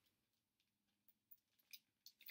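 Near silence: room tone, with a few faint brief ticks in the second half.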